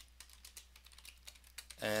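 Typing on a computer keyboard: faint, irregular key clicks.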